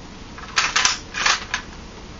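The metal bolt of a KJW M700 gas bolt-action airsoft rifle being worked quickly back and forward: two short sliding rasps about half a second apart, with a sharp click in the first. The bolt slides freely because it only cocks the hammer and has no spring to pull back.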